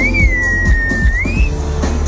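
Live dance music with a steady beat and heavy bass played loud over a festival sound system. Over it, a single whistle slides up, holds for about a second, then rises again briefly and stops.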